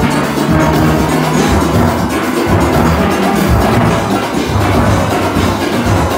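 Steel band music, with a nine-bass steelpan set played close by: its deep notes are prominent and continuous, over the higher pans and percussion of the full steel orchestra.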